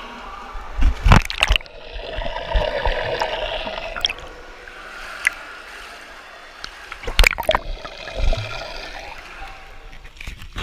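Water splashing and gurgling, with loud splashes about a second in and again about seven seconds in.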